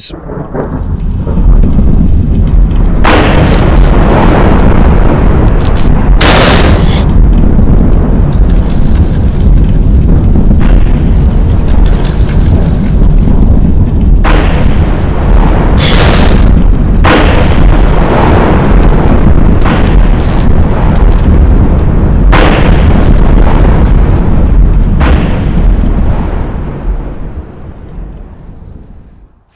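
Cinematic advert sound design: a loud, continuous deep rumble like rolling thunder, with several sharp hits over it. It swells in over the first couple of seconds and fades near the end.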